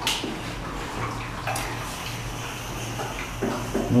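Swimming-pool filter pump running, with a steady low hum and water rushing through the pipework. There is a brief knock at the very start.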